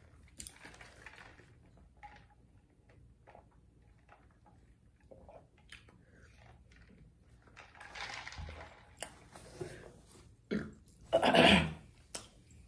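A person drinking from a tumbler with small mouth and swallowing sounds and light handling clicks, then a short, loud vocal sound near the end.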